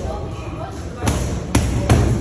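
Boxing gloves striking focus mitts: three sharp smacks in quick succession, starting about a second in.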